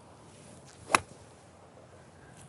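A six iron striking a golf ball off the turf: one sharp, short crack about a second in.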